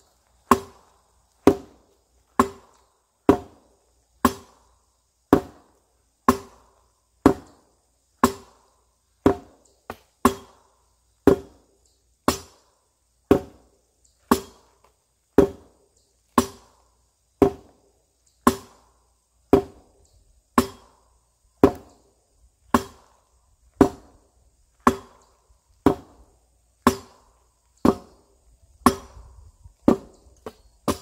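A steel arming sword striking a tyre pell in a steady rhythm, about one blow a second, some thirty blows in all. Each blow is a sharp hit with a short ring that dies away.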